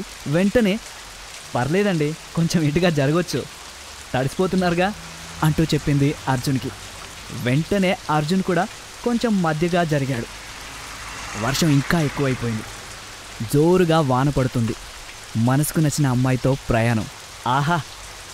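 A voice narrating in Telugu in short phrases with brief pauses, over a steady, even hiss that sounds like rain.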